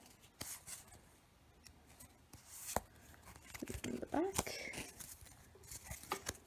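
Pokémon trading cards and a foil booster-pack wrapper being handled: scattered faint rustles and sharp clicks, one sharper click a little under three seconds in, with a brief faint murmur around the middle.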